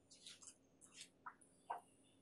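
Near silence in a lecture hall, broken by a faint, distant voice answering off-microphone from the audience and a few short, faint falling squeaks.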